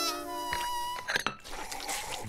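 Cartoon sound effects over background music: a thin, steady buzzing whine, then a few quick clicks about a second in.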